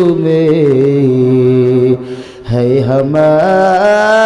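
A man's voice chanting into a microphone in long, drawn-out melodic notes. The notes slide downward, break off for about half a second about two seconds in, then rise again to a higher held note.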